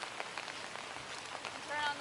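Steady rain, with many irregular sharp ticks of drops landing close by over an even hiss.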